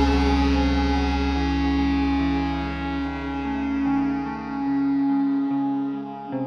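Instrumental passage of a rock song: an electric guitar picks a slow line of single notes over a low sustained note, which fades out about five seconds in.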